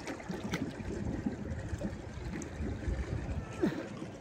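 Pool water lapping and sloshing softly around a swimmer floating on his back.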